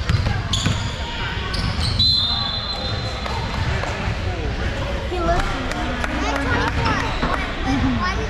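Basketball dribbled on a hardwood gym floor, with sneakers squeaking on the court, one long high squeak about two seconds in. Players' voices call out in the hall in the second half.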